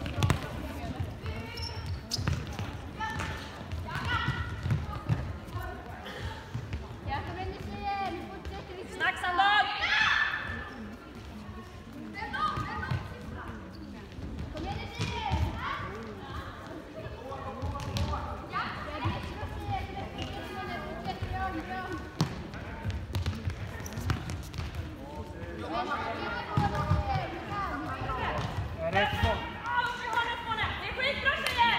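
A futsal ball being kicked and bouncing on a sports-hall floor, with players' footsteps, and voices calling out across the court in a large hall.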